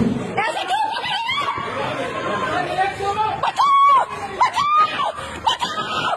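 Raised voices in a heated confrontation: a high-pitched voice shouting in long, strained calls, repeating from about halfway through, over other voices.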